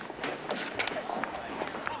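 A small crowd of people talking over one another, with scattered short clicks.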